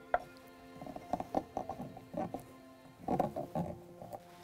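Soaked almonds being crushed with a pestle in a ceramic mortar: quick, irregular knocks in two runs, over soft background music.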